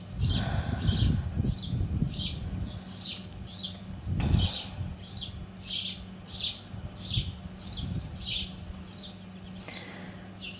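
A small bird chirping over and over in short high chirps, about two a second, with low rumbles near the start and again about four seconds in.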